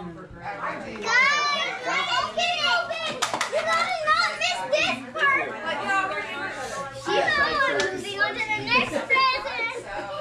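Several young children talking excitedly over one another, their high voices rising and falling in exclamations.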